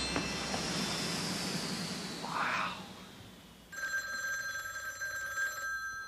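A telephone ringing, a steady trilling ring of several fixed tones that starts about two-thirds of the way in. Before it, the tail of a fading sound with a slowly falling whistle dies away.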